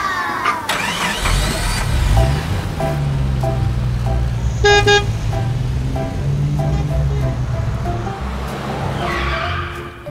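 Battery-powered ride-on toy car's electric motor running with a steady low hum from about a second in until near the end, with one short electronic horn beep about halfway through.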